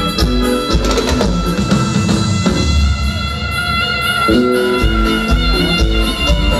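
Live band music played through a PA: drum kit and guitars under sustained held melody notes, with the low drums and bass dropping back briefly in the middle.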